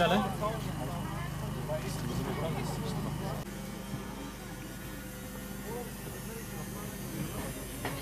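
Indistinct voices over a steady low engine hum. About three and a half seconds in, the hum and voices drop away at a cut, leaving a quieter background with faint voices.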